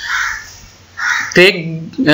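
A man speaking Bengali, with a short pause: two brief breathy sounds, then a single short spoken word about a second and a half in.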